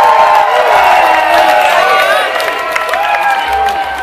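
Large festival crowd cheering and screaming, many high held voices overlapping, with scattered clapping; the noise eases off near the end.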